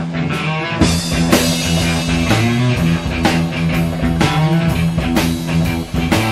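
Live rock band playing an instrumental passage on electric guitars, bass and drum kit. The low bass end comes in about a second in, under steady drum hits.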